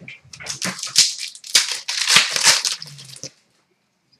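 Card packaging being torn open and handled: a run of irregular crinkling and rustling bursts, stopping a little after three seconds in.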